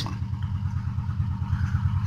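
Steady low machine hum with a fast, even pulse, like a running motor.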